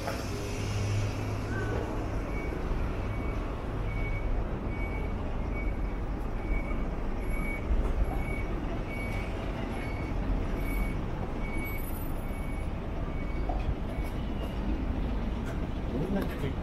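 Street traffic with a heavy vehicle's engine running low and steady, and an electronic beep of one steady pitch repeating about twice a second for roughly ten seconds.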